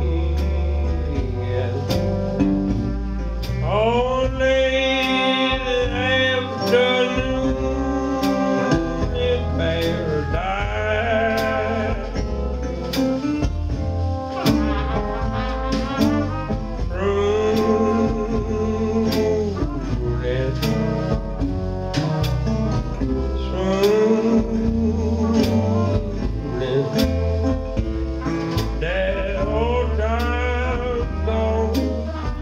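Live old-time blues band in an instrumental break: horns, including a trumpet, play long wavering melody notes over upright bass, guitar and a steady drum beat.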